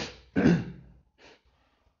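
A man coughs twice, about half a second apart, then gives a fainter third cough a little later.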